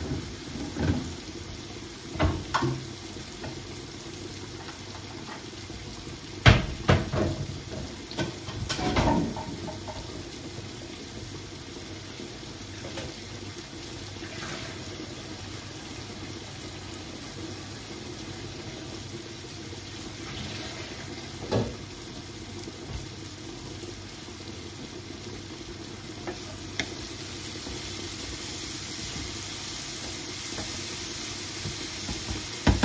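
Vegetables frying in a pan with a steady sizzle, which grows louder near the end. A few knocks and clatters of kitchen items on the worktop come through it, the loudest cluster about six to nine seconds in.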